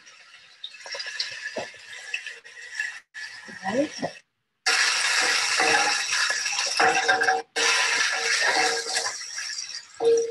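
Zuiki (taro stems) and green onion sizzling as they are stir-fried in a hot pan, loudest in the second half. The sound cuts out briefly a few times.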